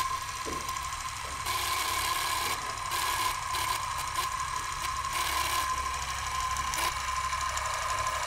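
Film projector running: a steady mechanical rattle and whir, with a constant whine through it, starting with a click.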